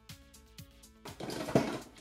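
Soft background music, then from about a second in, clattering and clicking of plastic Nicer Dicer chopper parts being handled.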